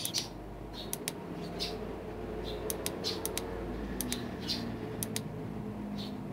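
Repeated sharp clicks of the push buttons on a digital temperature controller as it is stepped through its heating/cooling mode setting, some coming in quick pairs. Short high chirps sound now and then in the background.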